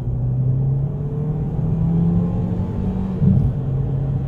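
2017 Chevrolet Cruze hatchback's 1.4-litre turbocharged four-cylinder engine pulling under acceleration, heard from inside the cabin. Its pitch rises, then drops a little past three seconds in as the automatic transmission upshifts.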